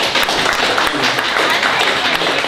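Audience applauding at the end of a solo acoustic guitar piece.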